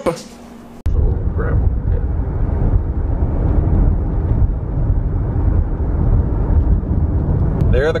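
Steady low rumble of a car driving along a country road, heard from inside the cabin, starting abruptly about a second in.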